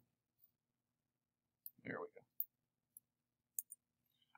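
A few faint, sharp computer mouse clicks in the second half, the last two close together near the end.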